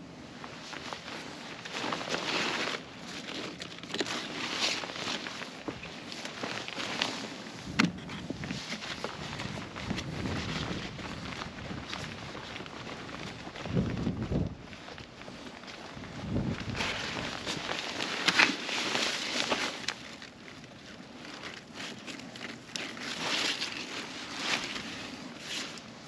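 Footsteps and rustling through a zucchini patch, with handling of a wooden harvest crate; a few dull thumps along the way.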